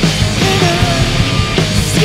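Live rock band playing a loud, heavy punk-style song: distorted electric guitars over electric bass and drums.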